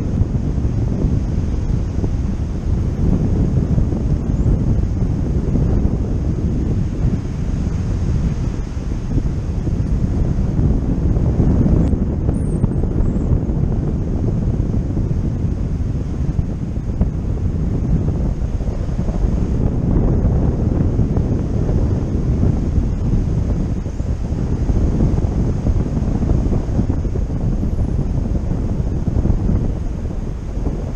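Wind from a paraglider's flight rushing over an action camera's microphone: a loud, continuous low rumble that swells and eases.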